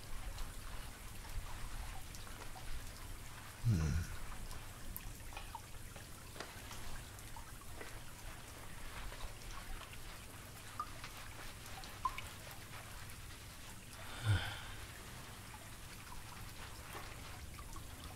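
Shower water running and spattering, with scattered drips and small ticks. Two brief louder low sounds come, one about four seconds in and one near fourteen seconds.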